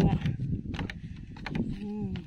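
A cow mooing briefly near the end, with a few light knocks from bamboo poles underfoot as someone crosses a bamboo footbridge.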